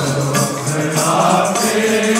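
Sikh kirtan: two harmoniums playing a sustained melody, tabla strokes keeping the rhythm, and men's voices chanting the hymn.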